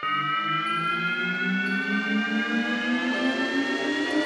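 Synthesized riser in electronic intro music: a siren-like tone gliding slowly and steadily upward, with a pulsing low layer climbing beneath it as it builds.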